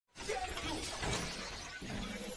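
Sound effect of an animated logo intro: a dense rush of noise that starts abruptly at the very beginning and keeps going.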